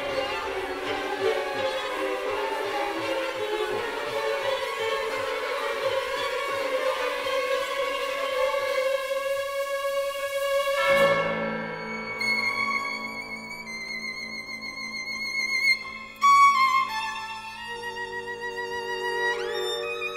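Contemporary classical music for solo violin and symphony orchestra. A dense, busy texture with a held note breaks off abruptly about halfway through, leaving sparse sustained violin notes with vibrato and a rising slide near the end.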